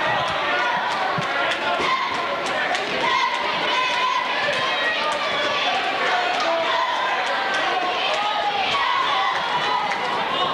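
Many voices talking at once in a gymnasium, with a basketball bouncing on the hardwood floor now and then.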